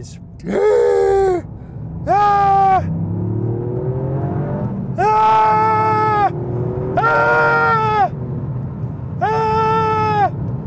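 Toyota GR Yaris driven hard: its turbocharged 1.6-litre three-cylinder engine runs underneath, rising in pitch through the middle, while the tyres squeal in five separate bursts of about a second each as the car slides.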